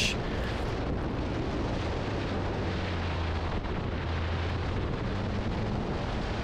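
Alfa Romeo 4C's turbocharged 1.75-litre four-cylinder engine running steadily under way, under a steady rush of wind on an exterior-mounted microphone.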